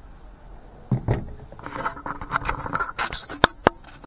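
A fixed-blade knife being handled and set down on a tabletop: a knock about a second in, then scraping and rustling, and two sharp clicks near the end.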